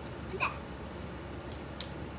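A single short, high yip or whine from a dog, rising quickly in pitch, about half a second in, followed near the end by one sharp click.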